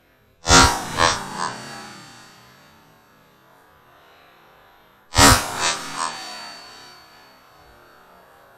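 Two shotgun shots from an Armsan 612 semi-automatic shotgun fired at flying ducks, about half a second in and again about five seconds in. Each bang is followed by a rolling echo that dies away over a couple of seconds.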